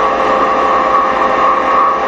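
Steady electrical hum with hiss underneath, a fairly high-pitched, unchanging drone. It is loud and even, with no breaks or events, the constant background noise of a poor-quality recording.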